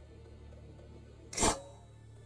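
A single shot from a Hoyt Ventum Pro compound bow: one short, sharp snap as the string is released, about one and a half seconds in.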